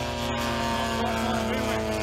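Radio-controlled model aircraft engine running at a steady throttle, a continuous drone with a regular low pulse.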